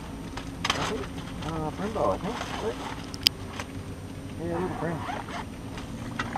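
Indistinct low voices talking over a steady low hum, with one sharp click a little past halfway.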